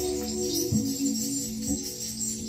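Free-improvised live music on alto saxophone, electric bass and drums: held mid-range notes with a couple of sharp low attacks, over a constant shimmer of cymbals.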